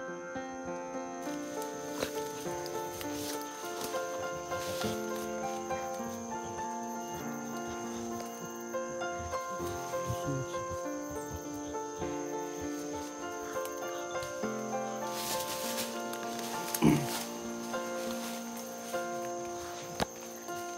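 Background music of slow, held chords that change every few seconds, over a steady high-pitched insect drone. A short, sharp sound about 17 seconds in is the loudest moment.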